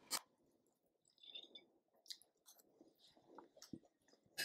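Near silence, with faint chewing of a mouthful of food being tasted and a short click near the start.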